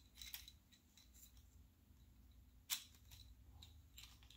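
Faint clicks of a Transformers Earthrise Hoist figure's plastic parts being shifted and unclipped while it is transformed by hand, with one sharper click about two-thirds of the way through.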